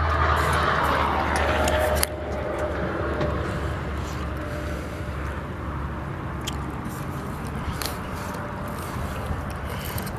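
2014 Polaris Ranger 800 HO's twin-cylinder engine idling steadily, with camera-handling rustle that is louder for the first two seconds and a few light clicks.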